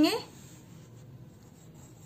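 Pencil writing on a paper workbook page, faint.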